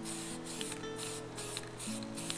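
Aerosol spray paint can sprayed in short bursts, about five of them a little over two a second, laying down brown paint. Background music with held notes plays underneath.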